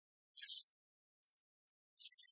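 Near silence with two brief, faint high-pitched snatches of background music, about half a second in and again just past a second.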